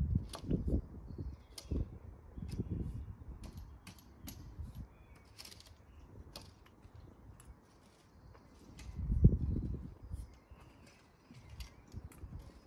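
Footsteps crunching on loose topsoil and a wide landscaping rake scraping over it as the soil is levelled: a run of irregular soft crunches, scrapes and clicks, with a louder low thump about nine seconds in.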